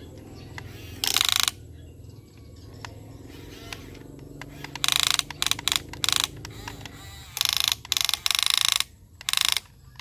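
Huina remote-control toy excavator's small electric gear motors whining in short bursts as the boom and bucket move: one burst about a second in, then a quick run of about eight bursts in the second half.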